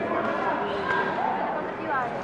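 Indistinct chatter of many voices in a large sports hall, steady and without a single clear speaker.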